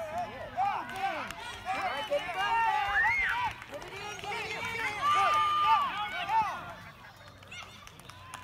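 Many overlapping, indistinct voices of spectators and players calling out and chattering at a youth baseball game, with one long held call about five seconds in.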